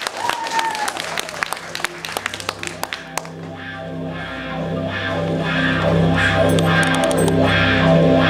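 Guitar-led music comes in about three seconds in with sustained low notes and a regular beat, and grows steadily louder. Scattered clicks come before it.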